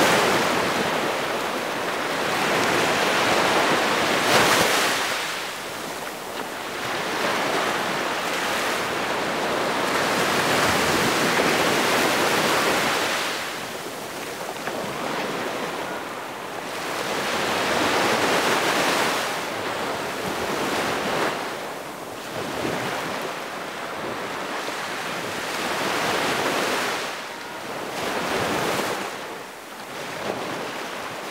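Sea waves washing in, a rushing surf that swells and ebbs every few seconds.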